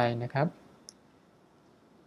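A man speaking briefly in Thai, then quiet room tone with a single short, faint click just under a second in.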